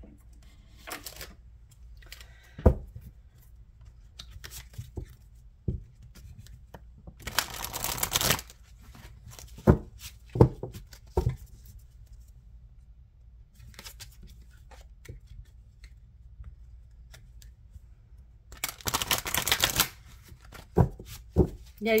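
A deck of oracle cards being shuffled by hand, in two bursts of about a second each, with a few short sharp card taps in between.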